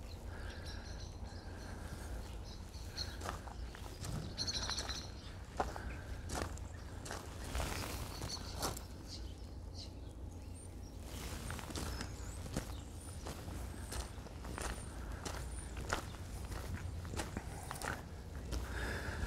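Footsteps of a person walking, heard as irregular soft steps about every half second to a second, over a steady low rumble.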